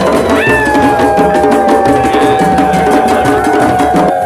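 Hand drums, djembes among them, playing a fast steady rhythm in a drum circle. About half a second in, a long high note enters and is held, sliding slowly lower.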